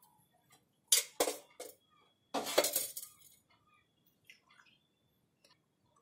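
Steel kitchen utensils clinking and clattering: a few sharp metallic strikes about a second in, then a louder, longer clatter with a little ringing around the middle.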